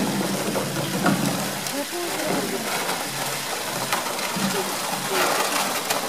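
Indistinct crowd chatter over a steady hiss, with a few sharp knocks as a polar bear pushes a hollow plastic barrel about on concrete.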